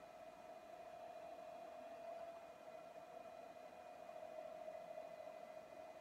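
Faint, steady whine from the RF-30 mill/drill's Z-axis drive motor as the CNC control moves the spindle head slowly upward toward its home switch.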